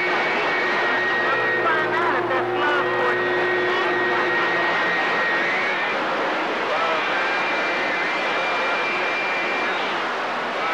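CB radio receiving skip: a steady rush of static with faint, garbled distant voices mixed in and thin steady whistling tones over them.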